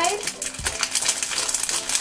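Shiny plastic blind-bag packet crinkling and crackling as it is opened by hand and a card is pulled out.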